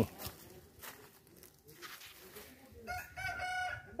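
A rooster crowing once, a single drawn-out call of about a second starting near the end, after a few seconds of faint background.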